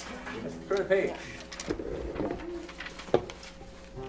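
Quiet, indistinct murmured talk in a small room, with one sharp click a little after three seconds in.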